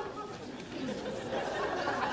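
Murmur of background chatter from many voices, growing louder near the end.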